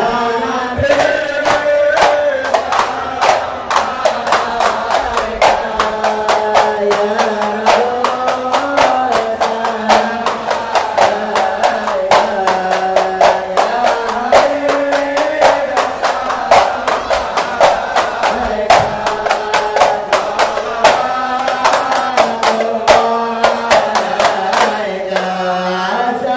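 A group of voices chanting together in a wavering melody over a fast, steady beat of sharp percussive strikes, loud and continuous.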